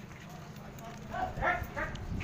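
An animal calling: three short calls in quick succession in the second half.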